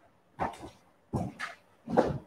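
Three short animal calls, each a fraction of a second long and about two-thirds of a second apart.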